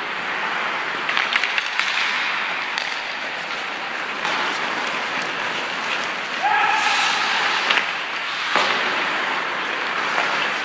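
Ice hockey skates scraping across the ice with sharp clacks of sticks on the ice and puck, in an arena's echo. A brief shout cuts in a little past the middle.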